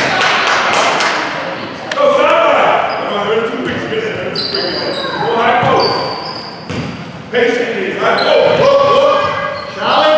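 Youth basketball game in a gym: the ball bouncing on the hardwood court, sneakers squeaking a few times, and players and spectators shouting, all echoing in the large hall.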